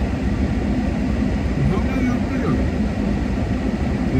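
Steady low rumble of a car's cabin, heard from inside the car, with faint voices murmuring about halfway through.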